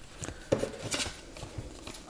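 Thin cardboard art cards being picked up and fanned out by hand: a few soft taps and light rustles, with a sharper tick about half a second in.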